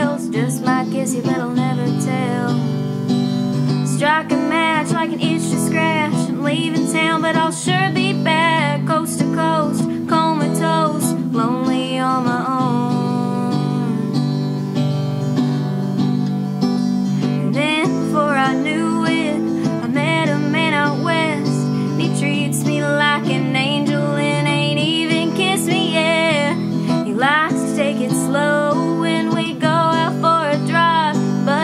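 Small-bodied steel-string acoustic guitar strummed in a steady rhythm, with a woman singing over it in a folk/Americana song.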